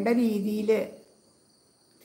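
A woman speaking in Malayalam for about the first second, then a pause in which only a faint, steady high-pitched tone remains.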